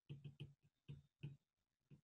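Faint taps of a stylus on a tablet's glass screen while handwriting, about half a dozen short clicks spread unevenly.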